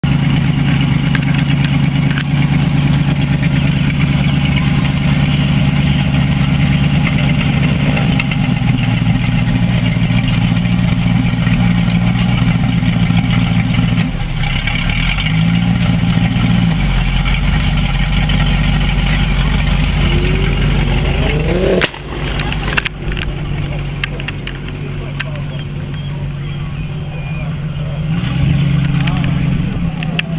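Car engines running at idle, loud and steady, with the revs rising a few times. The level dips about two-thirds of the way through, then climbs again near the end as engines rev up.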